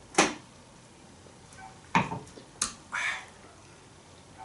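Drinking from a glass mug and setting it back down on a desk: a few sharp clicks and knocks spread over the few seconds, the last with a short rustle.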